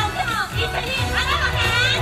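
Yosakoi dance performance track playing loud: a steady bass line under high-pitched, sliding voices.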